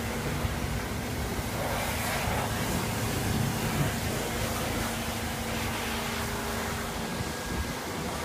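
An engine running steadily at idle: a low, even hum with a faint constant tone.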